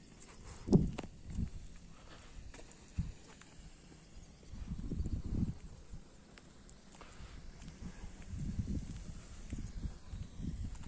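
Irregular low rumbles and thumps on the microphone, with the strongest just before a second in, swells around five seconds and near the end, and a sharp click at about three seconds.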